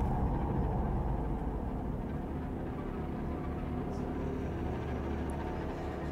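A low, steady rumbling drone that eases slightly in level over the first couple of seconds, with a couple of faint high ticks.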